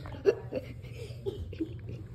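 A person giggling in short, stifled bursts of laughter, with one sharper burst a quarter second in.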